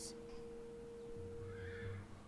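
A horse whinnying faintly in the second half, under a steady held note.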